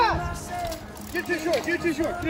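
A man's voice talking excitedly, rising to a sharp high exclamation at the start, then a quick run of short repeated syllables.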